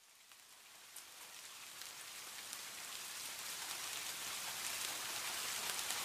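Steady rain falling, fading in from silence and growing steadily louder, with a few sharper drop taps in it.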